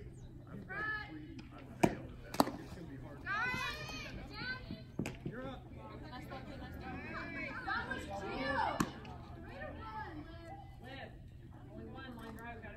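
Girls' voices calling and chattering from the softball field and dugout, with two sharp smacks about two seconds in, half a second apart.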